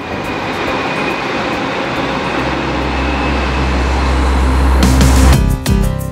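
London Northwestern Railway electric passenger train passing: a rushing noise that grows louder, with a deep rumble building under it and a faint steady high whine. About five seconds in it cuts off abruptly into music.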